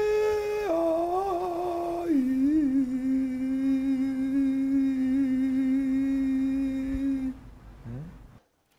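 A voice humming long held notes: it steps down in pitch under a second in and again about two seconds in, then holds the lowest note steadily until it stops near the end.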